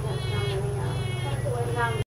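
Juvenile wood stork giving repeated begging calls, about three short calls in two seconds, over a steady low hum.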